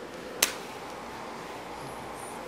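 One sharp click about half a second in as the sculpting tool strikes the tabletop, over steady room hiss.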